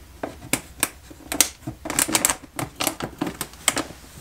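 Sheet-metal duct pipe being twisted and pushed into a 4-inch wall vent collar: a run of irregular sharp clicks, densest around the middle.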